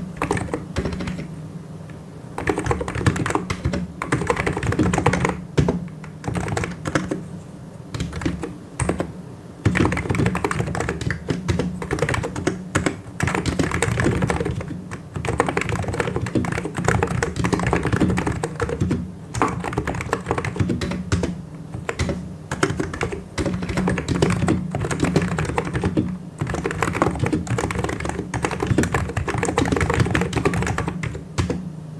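Fast, continuous typing on a computer keyboard: dense key clicks in runs of a few seconds, broken by short pauses.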